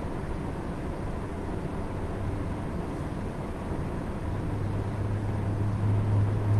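Steady low hum over a background hiss, growing louder over the last two seconds.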